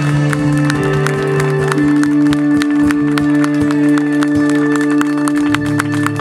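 Live band with electric guitars and trumpet playing the closing bars of a song: long sustained notes that shift pitch a couple of times, under repeated drum and cymbal hits.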